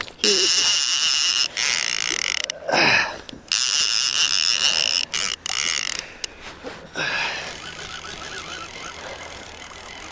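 Fishing reel's drag buzzing in spells as a hooked smoothhound pulls line off, with short breaks, stopping about seven seconds in.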